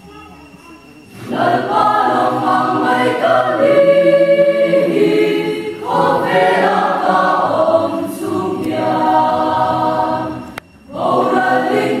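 Church choir of mixed male and female voices singing a hymn, coming in about a second in after a quiet pause, with short breaks between phrases near the middle and just before the end.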